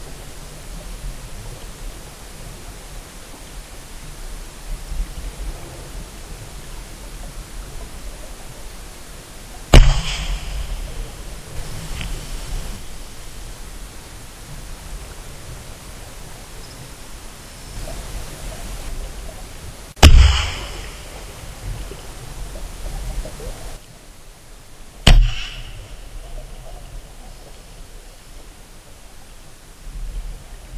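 Three sharp knocks over a steady rushing noise: one about ten seconds in, one about twenty seconds in, and one about twenty-five seconds in. Each knock is loud and brief, with a short tail.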